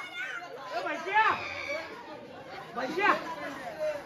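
Several people's voices chattering and shouting, with louder shouted calls about a second in and again about three seconds in.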